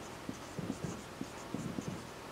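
Marker pen writing on a whiteboard: a quick, irregular run of short, faint strokes as letters are drawn.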